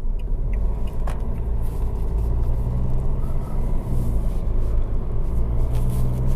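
Steady drone of a Fiat Egea's 1.6 Multijet four-cylinder turbodiesel and tyre and road rumble heard from inside the cabin as the car drives on. There is one brief click about a second in.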